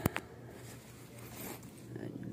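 Backpack and padded laptop case being handled: two sharp knocks at the very start, then fabric rustling and the scrape of a bag zipper.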